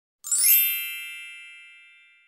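A single bright chime struck about a quarter of a second in, ringing with several high bell-like tones and fading away slowly over the next two seconds: an intro sting over the opening title card.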